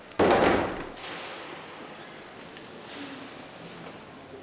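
A heavy wooden church door banging shut: one sudden loud thud near the start with an echoing decay, followed by the faint room tone of a large stone church.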